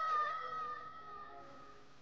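A young woman's long, drawn-out cry of "Shifu!" ("Teacher!"), held on one high note and fading away over the first second and a half.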